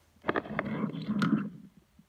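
Diecast toy cars pushed and scraped across a wooden floor by hand, a rough rumbling with a few sharp clicks as the metal models knock together. It starts a moment in and stops shortly before the end.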